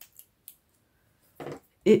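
Small craft scissors snipping three quick times.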